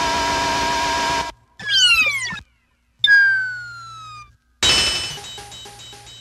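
A string of short, separate sound samples from a turntablist battle record, with a gap between each: a steady held tone lasting about a second and a half, a brief sliding sound, a sharp ding whose pitch sinks as it fades, and a loud hit near the end with a ringing tail that pulses about five times a second.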